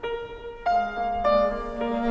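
Yamaha grand piano playing a classical passage, with notes struck about every half second and ringing on between them. A low held note joins underneath about two-thirds of a second in.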